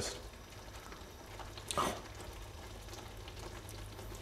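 Faint, steady sizzle of butter chicken sauce simmering in a pan, with one short slurp from a tasting spoon near the middle.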